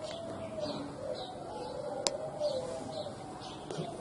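Faint cooing of a dove-like bird: low, wavering calls repeated through the pause, with faint high chirps of small birds and one sharp click about two seconds in.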